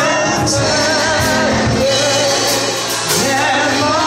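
Live gospel music: a woman singing into a microphone, holding wavering notes, over a band with drums and cymbals.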